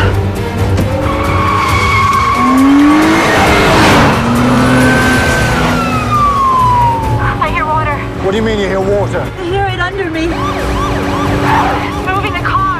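Car-chase sound: a sports car's engine revving hard with tyre squeals and skids as a police car slides across the road. From about seven seconds in, police sirens warble.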